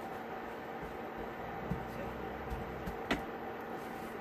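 Quiet kitchen handling sounds over a steady hum: hands pressing tortilla dough flat under crinkly plastic wrap on a wooden board, a few soft thumps, then a sharp knock about three seconds in as a rolling pin is picked up.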